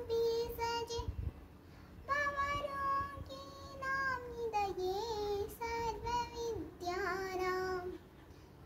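A young girl chanting a Sanskrit stotra in a sing-song melody on long held notes, with a short pause about a second in.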